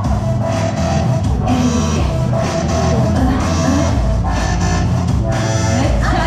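Idol-pop backing track with guitar and a steady beat played over PA speakers: an instrumental passage between sung lines while the group dances.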